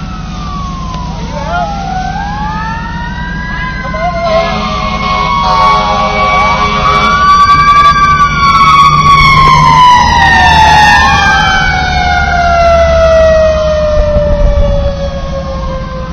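Several emergency-vehicle sirens wailing at once, their pitches rising and falling in slow overlapping sweeps. A steady held note joins for about three seconds a few seconds in. In the second half one siren tone slides steadily lower. The sirens are loudest in the middle.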